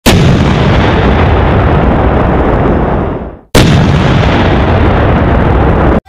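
Loud, rumbling, explosion-like sound effect for a logo intro, in two blasts. The first starts abruptly and fades away about three seconds in. The second starts abruptly about half a second later and is cut off sharply at the end.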